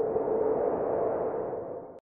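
Title-sequence sound effect: a swelling electronic hum with one steady mid-low tone under a noisy wash, cutting off suddenly at the end.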